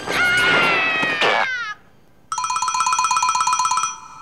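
Comic film sound effects: a loud sliding tone that falls in pitch, mixed with noise, ends after about a second and a half. After a brief pause comes a rapid two-tone electronic trill, pulsing about ten times a second for over a second and a half.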